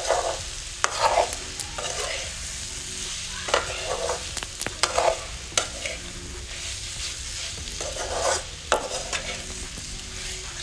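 Crab masala sizzling as it fries in a metal pot, stirred with a perforated metal ladle: a steady frying hiss with repeated irregular scraping strokes and sharp clicks of metal on the pot.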